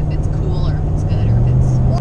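Steady low road and engine rumble inside a moving pickup truck's cab, with a low hum growing stronger in the second half and faint voices.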